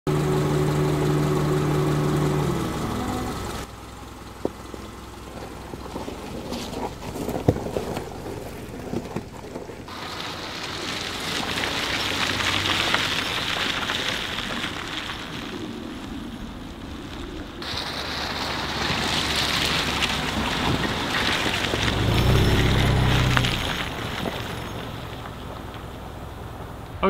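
A Subaru Outback on a dirt forest road: a steady engine hum at first, then tyre and wind noise over the gravel with a few sharp clicks. The sound changes abruptly several times, and the low engine hum comes back near the end.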